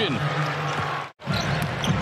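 Basketball arena game sound: crowd noise from the stands with court sounds mixed in. It cuts out abruptly at an edit about a second in, then picks up again.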